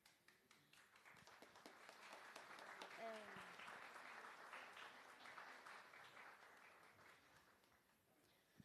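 Faint audience applause, many hands clapping together, swelling about a second in and dying away near the end, with a brief voice call about three seconds in.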